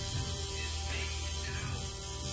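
Tattoo machine running with a steady electric buzzing hum while it works the needle into the skin.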